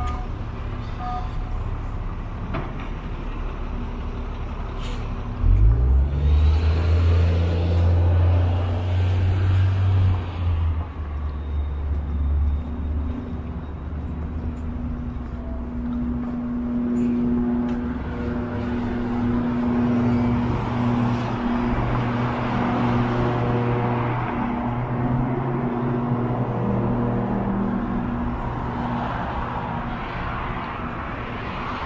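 Road traffic on a city street. A heavy vehicle's engine starts up loud and close about five seconds in and runs for several seconds, then the engine hum of passing traffic carries on.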